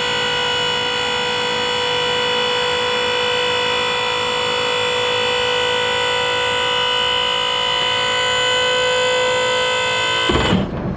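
Electric hydraulic pump of a Moritz 12-foot dump trailer running with a steady whine as it powers the raised dump bed back down.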